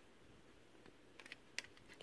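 Near silence with a few faint, short clicks a little past halfway through.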